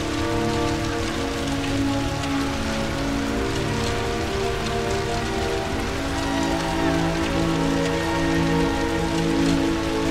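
Steady rain hiss laid under slow, sustained music chords that shift a few times.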